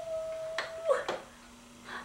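A drawn-out vocal note of about a second that drops at its end, then a click a little after a second in as a small tower space heater is switched on, its fan starting a faint steady low hum.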